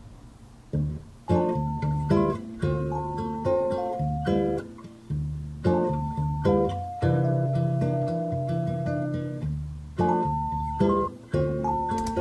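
A recorded guitar part plays back together with a keyboard part from Ableton Live's Electric electric-piano instrument, starting just under a second in. The electric piano has been tuned up about 34 to match the guitar, which was tuned slightly sharp at A 445, and the two now sound a bit better in tune.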